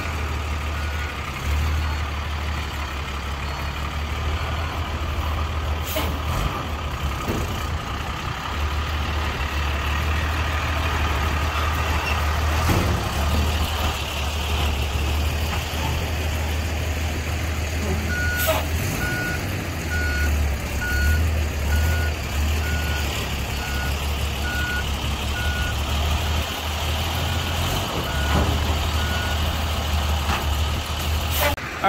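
Dump truck's diesel engine running with a deep, steady rumble as the truck manoeuvres the loaded trailer. A little over halfway through, its reversing alarm starts beeping about once a second as the truck backs up.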